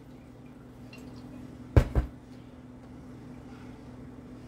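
Wooden spoon stirring chicken stock into a roux in a frying pan, with faint liquid sounds. A little before halfway, a glass measuring cup is set down with two sharp knocks a quarter second apart.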